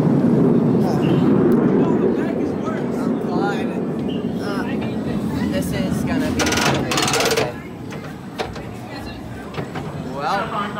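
Chatter of riders in a roller coaster loading station as they board, with a loud buzz lasting about a second, near seven seconds in.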